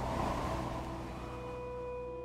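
A breathy whoosh of noise swells at the start and fades over about a second and a half, over sustained notes of the background music.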